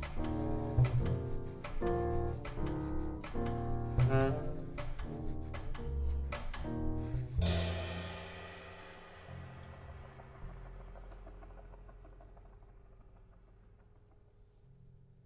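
Jazz quartet of saxophone, piano, double bass and drums playing a run of short, accented chords, then hitting one final chord about seven seconds in that rings on and slowly fades away.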